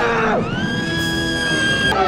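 A woman lets out one long, high scream of fright, starting about half a second in and held for over a second, over dramatic background music.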